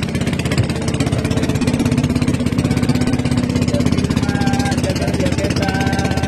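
Boat engine running steadily with a rapid, even pulse.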